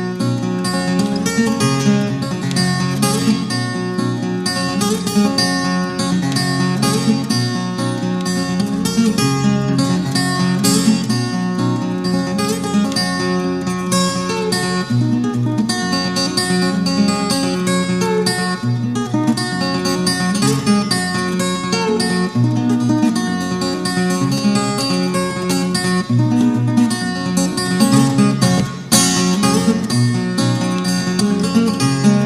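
Solo acoustic guitar fingerpicking a ragtime instrumental: a steady alternating bass under a busy run of picked melody notes, played without pause.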